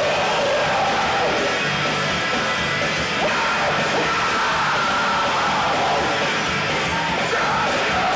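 A live rock band playing loud, with electric guitar, bass and drums, and a singer yelling into the microphone over them. Recorded on a camcorder's built-in microphone from the crowd, so the sound is dense and blurred together.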